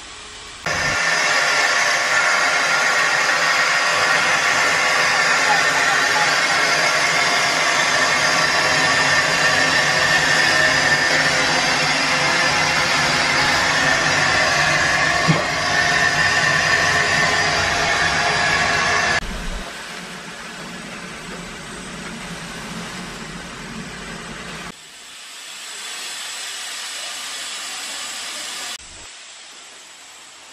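Steam hissing steadily from the standing narrow-gauge steam locomotive U46.101: a loud, even hiss that starts about a second in and drops abruptly to a much quieter hiss about two-thirds of the way through.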